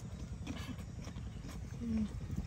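Chewing with the mouth closed: scattered wet mouth clicks and smacks over a steady low rumble, with a short hummed "mm" near the end.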